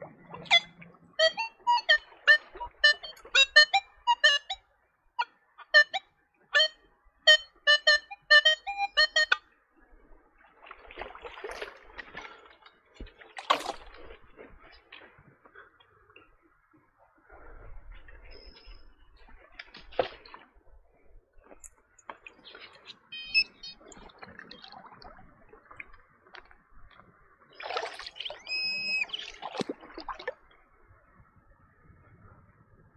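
Nokta Legend metal detector giving a rapid, irregular run of short pitched beeps through its speaker for about the first nine seconds as the coil is swept over targets. Then water sloshes and splashes, with a few more brief tones near the end.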